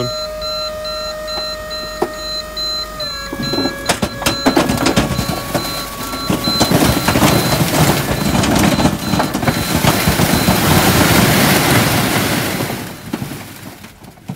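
Tipper van's hydraulic tipping pump whining as the body rises, its pitch dropping a step about three seconds in. Then a long rush and clatter of bricks and rubble sliding out of the tipped body, dying away near the end.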